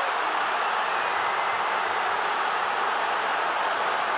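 Steady crowd noise of a packed football stadium: a continuous, even wash of many voices with no single cheer standing out.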